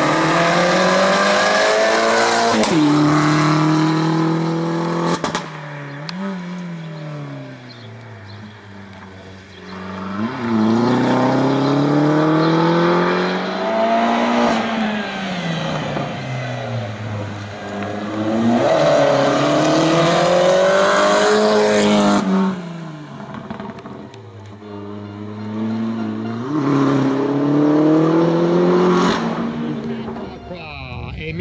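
Opel Corsa race car's engine revving hard and falling away again and again as it accelerates and slows between slalom cones. Its pitch climbs steeply, cuts back at gear changes and lifts, then climbs again, about six times.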